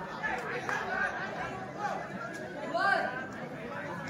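Spectator crowd shouting and chattering, many voices overlapping, with a louder shout about three seconds in.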